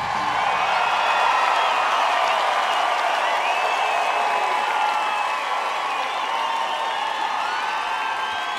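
Large concert crowd cheering a singer onto the stage: a steady roar of many voices, with high, wavering cries and whoops over it.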